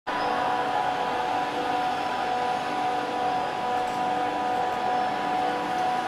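Steady machinery hum with a few constant tones over an even wash of room noise.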